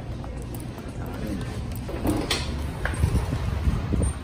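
A paper takeout bag rustling as it is handled, with one sharper crinkle a little past halfway, over a steady low rumble.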